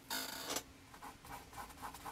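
Paintbrush strokes on a canvas panel as oil paint is worked in: one longer scrubbing stroke at the start, then a run of short, quick dabbing strokes at about six a second.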